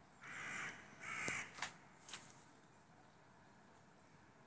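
Crows cawing from a flock circling overhead: two harsh caws in the first second and a half, then a couple of short fainter calls.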